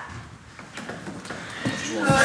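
A brief lull: low room sound with faint, indistinct voices.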